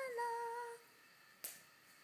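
A woman's drawn-out vocal 'ooh', sliding up in pitch and then held steady for about a second. A single short click follows about a second and a half in.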